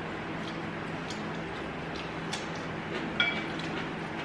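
Forks and spoons clicking lightly against bowls, a few scattered taps with one short ringing clink about three seconds in, over a steady low hum.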